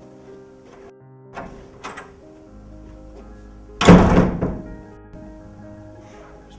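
A single loud bang about four seconds in, dying away over about half a second, preceded by two light knocks, all over a sustained background music score.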